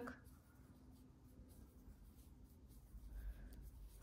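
Near silence: faint room tone with the soft rub of yarn being worked with a metal crochet hook.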